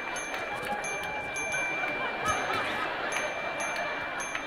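Audience laughter, with repeated short high chime sound cues ringing a couple of times a second as items pop up on a projected list.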